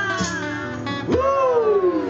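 Live band playing an encore song, with strummed acoustic guitars under a high pitched line that slides downward twice, the second slide starting a little past halfway.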